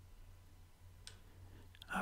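Quiet room tone with a steady low hum and one faint, short click about a second in.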